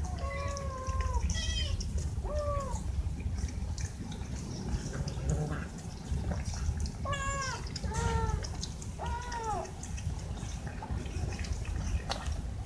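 Young cats meowing: six short meows, each rising then falling in pitch, three in the first few seconds and three more past the middle, over a steady low rumble.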